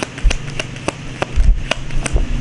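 A deck of tarot cards being shuffled by hand: a handful of sharp card clicks, roughly one every half second, with a couple of soft low thumps.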